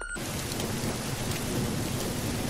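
Heavy rain falling, a steady even downpour that cuts in suddenly just after the start.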